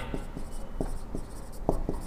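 Marker pen writing on a whiteboard: short scratchy strokes with a few light ticks as the tip meets the board.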